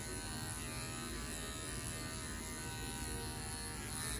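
Electric dog-grooming clippers with a #10 blade running with a steady buzz as they clip the thick coat on a dog's head.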